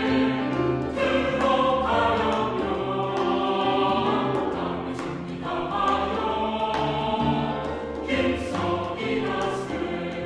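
Mixed SATB church choir singing a sacred anthem over instrumental accompaniment.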